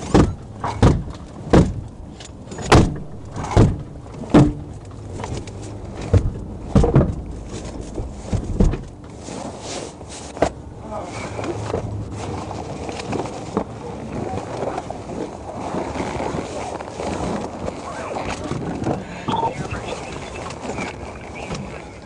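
A run of sharp, irregular thumps or knocks, roughly one a second, for about the first nine seconds. Then a steady murmur of noise with faint, muffled voices.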